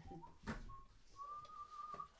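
Faint whistling: two short notes, then one longer held note that rises slightly in pitch, with a single click about a quarter of the way in.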